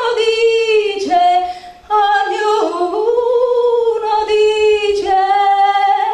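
A woman singing solo into a handheld microphone, unaccompanied, in long held notes that bend slowly in pitch. There is a short break for breath about a second and a half in.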